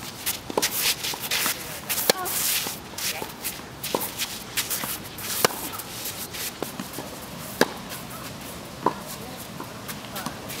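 Tennis rally on a clay court: sharp racket-on-ball strikes every one and a half to two seconds, with shoes scuffing and sliding on the gritty clay surface between shots.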